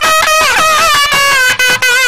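Nadaswaram playing a Carnatic melody: long reedy notes bent with slides, stepping down about halfway through, over steady drum strokes.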